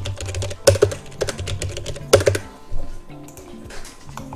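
Typing on a computer keyboard: a run of keystrokes with a couple of louder clacks, thinning out in the last second.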